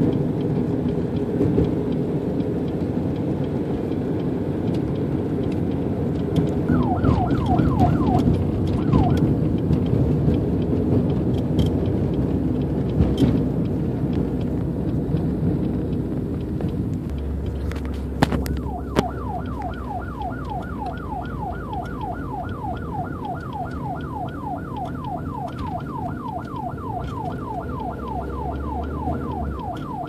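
Steady engine and road noise inside a moving car, with a police siren sounding a few short sweeps about 7 seconds in, then wailing continuously from about 19 seconds on in a fast rising-and-falling yelp of about three to four sweeps a second. Two sharp clicks come just before the continuous siren starts.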